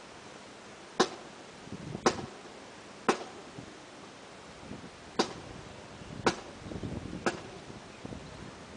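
Marching cadence: a sharp click or stamp about once a second, keeping time for the squad, with softer shuffling of boots on concrete between some beats.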